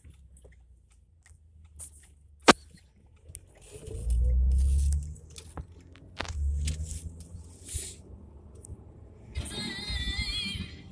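Car interior as the car pulls away from a traffic light: low rumble of engine and road, with heavy low surges about four and six seconds in. A single sharp, loud click comes about two and a half seconds in, and music with singing starts near the end.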